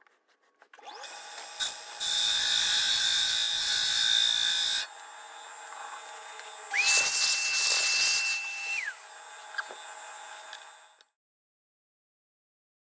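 Metal lathe running while a tool cuts a cast-iron flywheel: two spells of loud cutting noise, the second carrying a steady high squeal that slides in at its start and drops away at its end. Between and after the cuts the lathe runs more quietly, and the sound cuts off suddenly near the end.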